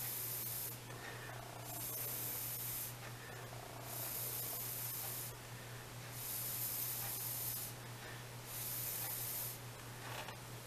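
A person blowing in five long puffs, each about a second long with short gaps between, onto a film of nail polish floating on water, to dry it for a water-marble design.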